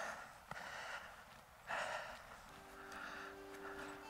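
A man's breath, with one short audible breath about two seconds in, during a pause in his talking while walking. Faint background music with held notes starts about halfway through.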